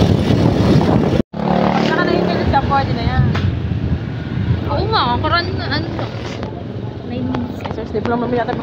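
Motorbike running while riding along a street, with wind rushing over the microphone at first. The sound drops out briefly about a second in, then a steady low engine hum carries on under voices.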